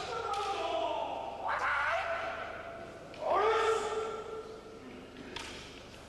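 Kendoists' kiai shouts in a large hall: long, held vocal cries, one at the start, another rising about one and a half seconds in, and a third rising about three seconds in that holds and fades. A short knock comes near the end.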